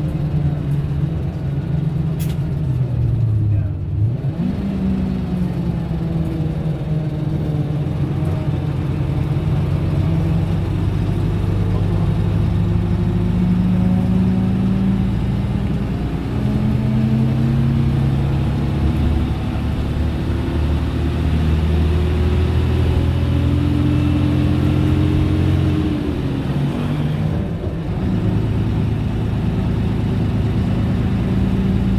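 Leyland National Mark 1 single-deck bus's diesel engine heard from inside the saloon while the bus is under way. The engine note drops and climbs again about four seconds in, around sixteen seconds and near the end, as the bus changes gear and pulls away.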